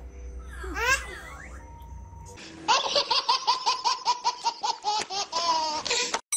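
A baby laughing hard: a fast, even run of squealing laughs, about five a second, starting a little before halfway and ending in a longer squeal. A short vocal sound comes about a second in.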